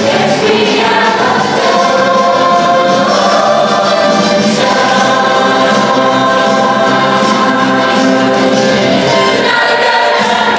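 Mixed show choir of male and female voices singing in harmony.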